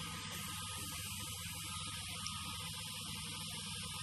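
Steady electrical hum with a hiss over it, with no distinct sound events.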